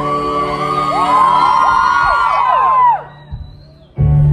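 Live band holding a sustained chord while many audience members scream and whoop over it in overlapping rising and falling cries. About three seconds in the music cuts off to a brief hush, and the band comes back in loudly at the very end.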